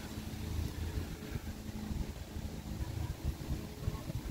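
Outdoor background noise: an uneven low rumble of wind on the microphone under a faint steady hum.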